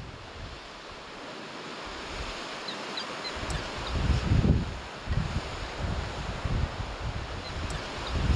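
Outdoor ambience of wind and surf on a rocky sea shore: a steady hiss. From about halfway through, wind gusts buffet the microphone in low rumbles.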